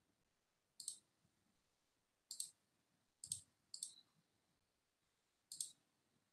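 Five faint, sharp computer mouse clicks, irregularly spaced, against near silence.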